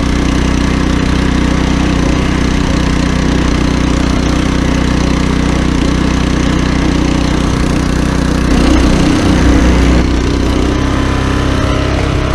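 The Kohler engine of an Earthquake Victory rear-tine tiller runs steadily under load as the tines churn through soil. About two-thirds of the way in, the sound briefly grows louder and its pitch wavers.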